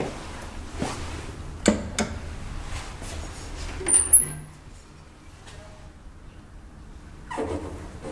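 Sharp knocks and clicks from the freight elevator's landing doors and call-button panel. About halfway through comes a loud button click with a short, very high beep, and near the end a louder rattling clatter.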